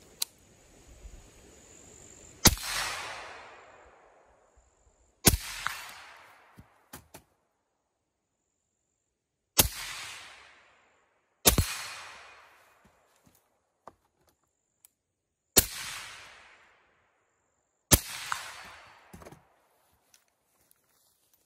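Six single gunshots from an 11.5-inch AR-style pistol, fired at uneven intervals a few seconds apart. Each shot is followed by an echo that trails off over a second or two.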